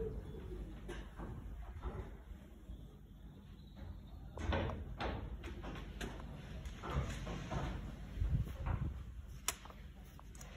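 A pigeon cooing briefly at the start, then scattered light knocks and clicks from hands handling metal parts around a turbocharger in an engine bay, the sharpest near the end.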